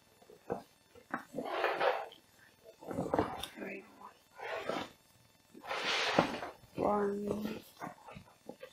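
Stiff waterproof fabric of a roll-top backpack rustling and crinkling in several separate bursts as its top closure is folded and rolled down, the loudest burst about six seconds in, with a few short voiced sounds from a person in between.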